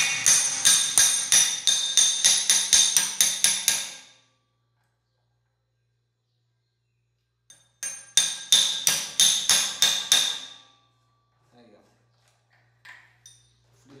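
Rapid light taps of a metal tool on the axle nut of a Shimano FH-MT410 rear bike hub, about four a second with a bright metallic ring, knocking the axle and freehub out of the hub shell. The tapping comes in two runs with a few seconds of silence between them, then a few faint clicks.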